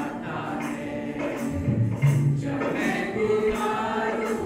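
Live praise-and-worship music: a group singing a gospel song together, accompanied by bass notes and steady percussion.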